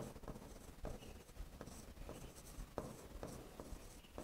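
Pen writing on an interactive smartboard screen: about a dozen faint, irregular taps and short scratches as the strokes are made.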